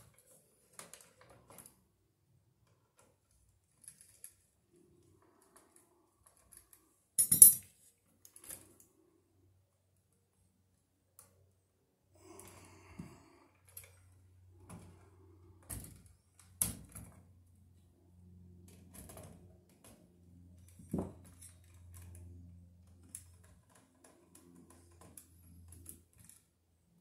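Scattered small clicks, taps and rustles of electrical wires and a hand tool being worked at an electrical box, with one sharp snap about seven seconds in. A faint low hum comes in about halfway through.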